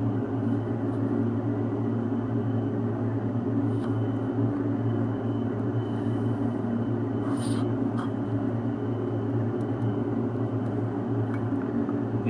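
Steady low room hum or rumble, like ventilation noise, with a few faint light ticks about four and seven and a half seconds in.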